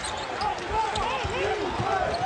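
Basketball shoes squeaking on a hardwood court in several short rising-and-falling squeaks, with the thuds of a basketball bouncing among them.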